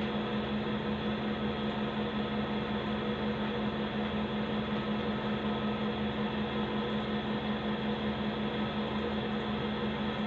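Steady background hum with one constant low tone over an even hiss, like a fan or other appliance running.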